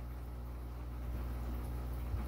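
Steady low electrical or mechanical hum with a faint hiss, unchanging throughout.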